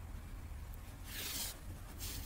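Thick yarn being drawn through a crocheted seam, one brief swish about a second in, over a low steady hum.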